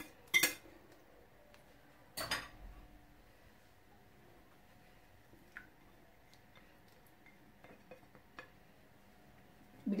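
Two sharp knocks of kitchen utensils against a bowl and glass baking dish, about half a second and two seconds in, followed by a few faint ticks and scrapes of a spatula as egg batter is scraped out of the bowl into the dish.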